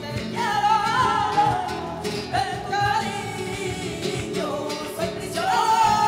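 Live flamenco: a singer's wavering, ornamented cante phrases, one near the start, one in the middle and one near the end, over flamenco guitar, electric bass, cajón and palmas (rhythmic handclaps).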